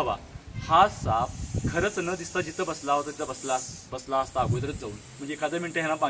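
Russell's viper hissing in a long defensive hiss, heard from about a second in until about four seconds in, under a man speaking.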